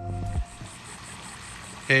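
Electronic intro music cuts off about half a second in, leaving a faint, steady splash of a pool fountain's water jet falling into the pool. A man's voice starts right at the end.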